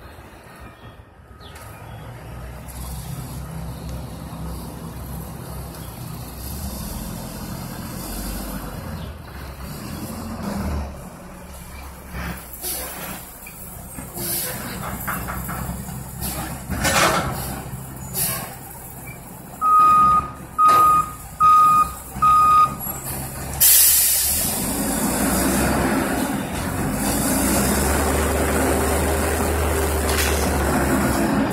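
Front-loading garbage truck's diesel engine running as it manoeuvres, with scattered clanks. Four reversing beeps come about two-thirds of the way in, then a loud air-brake hiss. After that the engine runs louder and steadier as the hydraulic forks lift the dumpster.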